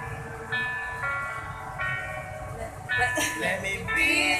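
Instrumental backing music of sustained chords that change every second or so, with voices coming back in near the end.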